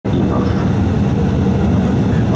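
Cabin noise inside an Embraer 175 as it taxis: a steady, low rumble from its running jet engines.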